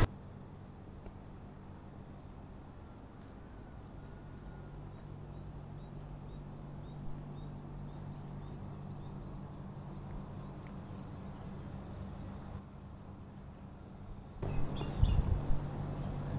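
Steady, faint, high chirring of crickets in the fields at dawn, over a low steady hum. Near the end, louder low noise with a few thumps comes in.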